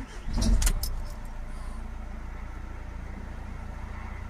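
Renault Trafic's 1.6 dCi four-cylinder diesel engine being started: a brief crank and catch about half a second in, then settling into a steady low idle.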